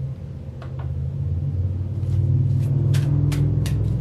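A steady low rumble that swells over the first couple of seconds, with a few light clicks over it.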